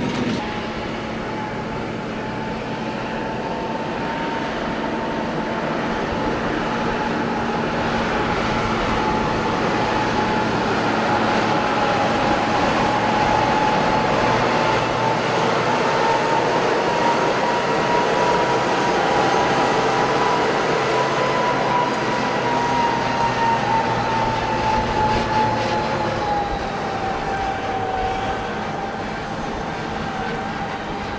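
Large farm tractors pulling loaded double grass trailers across a field: steady engine and drivetrain noise with tyre and trailer rumble, and a high whine that drifts slowly up and down in pitch.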